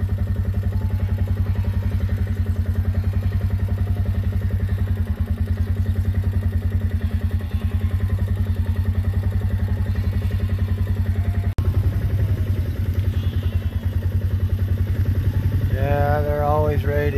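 A vehicle engine idling steadily close by, a low even hum with rapid regular pulses, cutting out for an instant about two-thirds of the way through.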